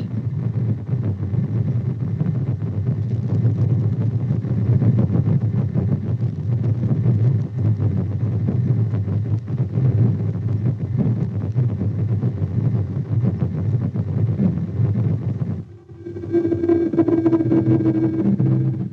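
Audio return from an AN/TPS-25 ground surveillance radar, heard through its loudspeaker: a continuous rough, rapidly fluctuating noise with most of its weight low. It drops out briefly near the end and gives way to a different return with a steady hum.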